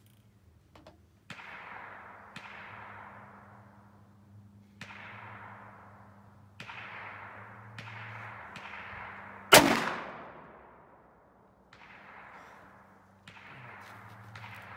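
A single shot from a Ruger Super Redhawk .44 Magnum revolver about two-thirds of the way in, a sharp, very loud crack with a trailing echo. Several much fainter cracks, each with a long fading echo, come at intervals before and after it.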